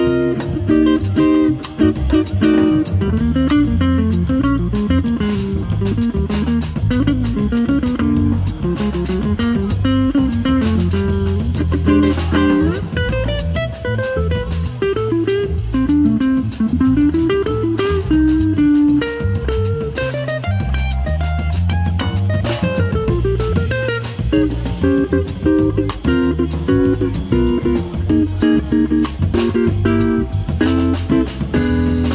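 Live instrumental trio music on electric guitar, electric bass and drum kit: a winding single-note melody rises and falls over a walking low bass line, with steady cymbal time from the drums.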